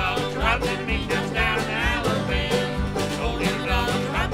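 Old-time jug band music: a harmonica in a neck rack plays a wavering lead over strummed acoustic guitar and plucked strings, with a steady low bass beat.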